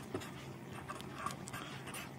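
Quiet room tone with a faint steady low hum and a few soft ticks.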